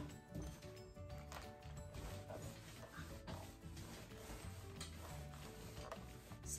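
Faint background music with sustained tones.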